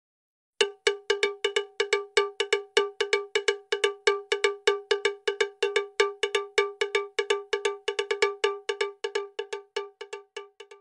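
Intro sound effect: a rapid, even run of bright, cowbell-like metallic strikes, about five a second, each with a short ring. It starts just after half a second in and grows fainter near the end.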